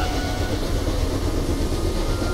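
Animated sound effect of an airbending blast: a loud, steady rushing gust of wind with a heavy low rumble underneath.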